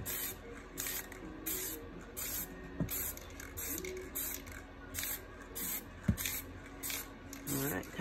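Aerosol can of Rust-Oleum 2X spray paint being sprayed in short hissing bursts, about two a second, as light dusting coats. A voice begins speaking near the end.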